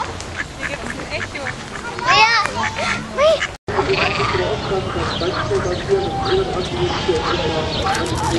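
Duck quacks, loudest as a quick run of calls a couple of seconds in, over people talking. After a short drop-out, a busier mix of bird calls and voices follows.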